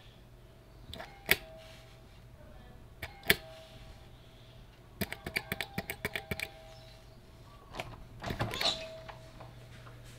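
Doorbell push-button pressed again and again: two clicks about a second in, two more about three seconds in, then a quick run of about ten presses, each press followed by a faint ringing chime tone. Near the end comes a louder rattle as the door is opened.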